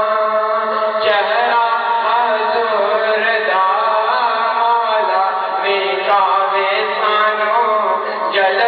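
A man's voice chanting devotional verses through a microphone, in long held melodic lines that bend up and down without a break.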